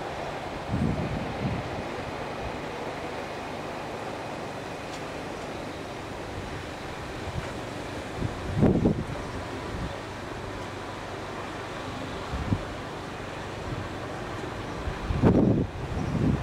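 Wind buffeting the microphone in short gusts, about a second in, near the middle and near the end, over a steady hiss of outdoor noise.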